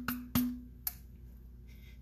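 Palm slapping the base of an upturned plastic graduated cylinder: three hollow knocks, each with a brief low ring, the last one weaker. The knocks drive out thick glaze (specific gravity 1.58) that clings inside the cylinder.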